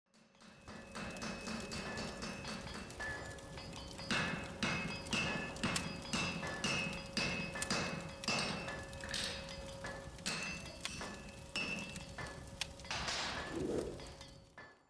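Intro sound design of metal hammer blows on an anvil, struck about twice a second with a short metallic ring after each blow, over a steady hum. Near the end it swells into a rushing sound and fades out.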